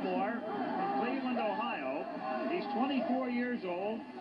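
Speech only: a voice talking on an old television broadcast, played back through a TV set.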